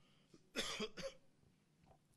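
A man coughs into his fist, twice in quick succession about half a second in, away from the microphone.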